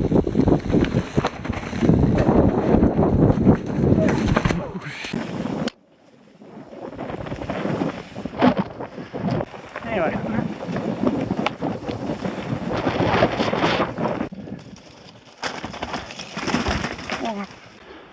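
Mountain bike ridden down a rough trail, heard through a helmet-mounted microphone: wind buffeting the mic over the rumble and rattle of tyres and bike on the ground. The sound breaks off suddenly about six seconds in and dips again around fifteen seconds, where the footage cuts.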